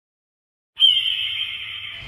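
Logo sting sound effect. After a short stretch of dead silence, a sudden bright, ringing high tone starts, sliding a little lower as it slowly fades.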